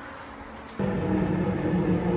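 The reported mysterious 'trumpet sound in the sky' from amateur recordings: a low, steady, horn-like drone of several held tones. It is faint at first, then jumps much louder at a cut a little under a second in.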